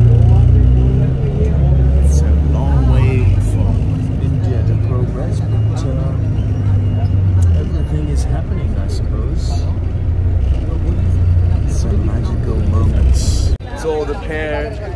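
City bus engine and road rumble heard from inside the cabin: a steady low drone with light rattles. It cuts off abruptly near the end.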